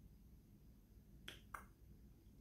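Near silence, with two faint short clicks about a quarter of a second apart a little past the middle.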